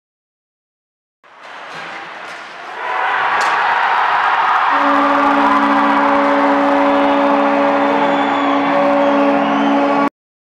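Ice hockey arena crowd cheering a goal, starting about a second in and swelling louder; about halfway through, the arena's goal horn starts one long steady blast over the cheering.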